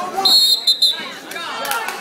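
A referee's whistle blows once, a short trilling blast of under a second, stopping the wrestling. Crowd voices and chatter carry on around it.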